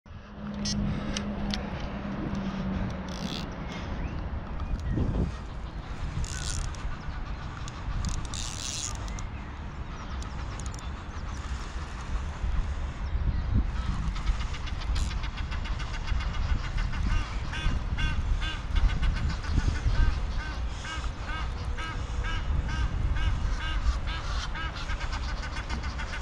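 Wind buffeting the microphone on the bank while a carp is played on a bent rod. From about halfway, a rapid, evenly repeated chirping or clicking runs over it.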